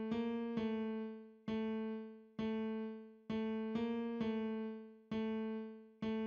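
FL Keys piano plugin in FL Studio playing a simple melody at 132 BPM: about nine single notes, mostly on one pitch with two brief steps up, each struck and fading.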